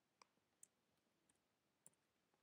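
Near silence with about four faint, scattered clicks of computer keys as the text is edited.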